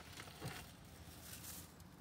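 Faint rustling of a thin plastic shopping bag and small scratchy handling noises as trash is picked out of a car door's storage pocket.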